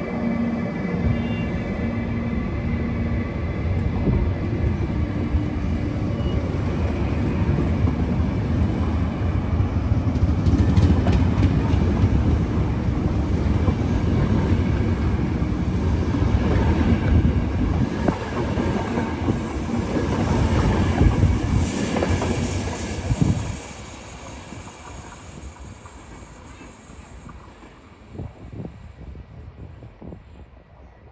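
CP locomotive-hauled passenger train rolling close past, its steel wheels rumbling and clicking over the rail joints. About three-quarters of the way through the noise drops sharply as the last coach goes by, leaving a fainter, fading rumble.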